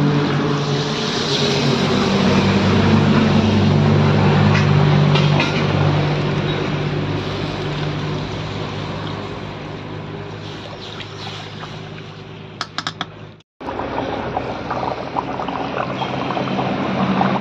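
Water poured into hot spiced oil and fried potatoes in a steel kadai: a loud hiss and sizzle at first that fades over about twelve seconds as the pan settles. After a short break the gravy is bubbling at the boil with a crackle. A steady low hum runs underneath.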